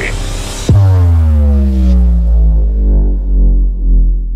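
A synthesized cinematic bass drop in an electronic DJ intro. About two-thirds of a second in, a sudden loud, deep impact cuts off a busy electronic passage, and its tones slide steadily downward in pitch as it rings out into a heavy low rumble.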